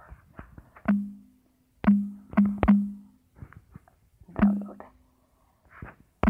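Taps on a phone's on-screen keyboard: several sharp, unevenly spaced taps, most followed by a short low buzz from the phone's key-press vibration.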